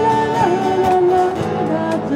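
A woman singing live into a microphone over an amplified acoustic-electric guitar. She holds a long note that slides down about half a second in and moves on to lower notes.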